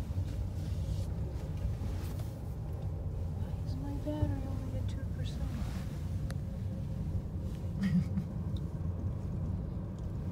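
Steady low rumble of a gondola cabin travelling down its cable line, heard from inside the cabin.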